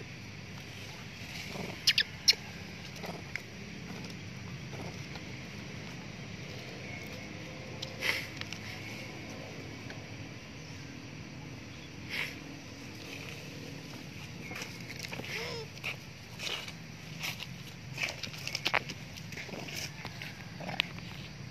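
Outdoor ambience: a steady low hum with scattered sharp clicks and rustles, and one short rising-then-falling squeak about fifteen seconds in.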